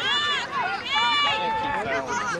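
High-pitched voices shouting: two long calls, the second ending on a held note.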